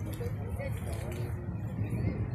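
Indistinct voices of people talking in the background, over a steady low rumble.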